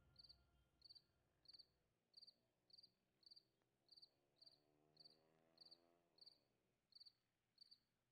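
Faint cricket chirping: short high chirps repeating evenly, about three every two seconds, over near silence.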